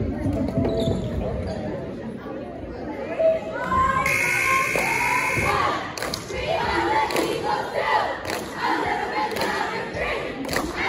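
Crowd of basketball spectators shouting and cheering, with a steady high tone lasting about a second and a half around the middle, and sharp knocks about once a second in the second half.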